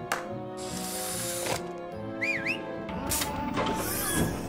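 Cartoon sound effects of an automated house's gadgets: mechanical whirring and clicking with a whoosh at the start as ceiling lamps and a television lower and the windows shut, with a short dipping, rising whistle about two seconds in. Background music plays underneath.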